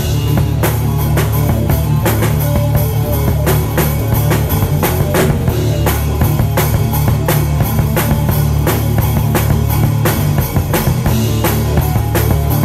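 A rock band playing live at full volume, heard from right by the drum kit: drums and cymbals hit in a fast, steady beat over electric guitar and bass.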